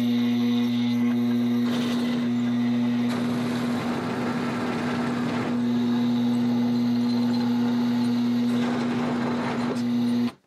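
Homemade wooden milling machine cutting steel with an end mill: a steady motor hum under rough, gritty cutting noise. The machine shakes while it mills, and the vise is not held down well enough and keeps sliding.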